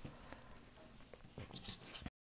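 Very quiet, with a few faint, short rustles and taps, mostly in the second half: hands handling sewn cotton patchwork pieces on a cutting mat.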